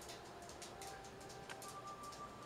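Quiet room tone with a faint tick about a second and a half in and a faint thin tone near the end.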